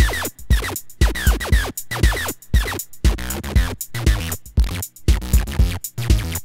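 A 303-style acid bass line from Bass Machine 2.5's acid layer, playing a looping pattern in F that the Sting generator wrote. It runs as a quick, uneven rhythm of short synth bass notes, each note's brightness sweeping down sharply after its attack.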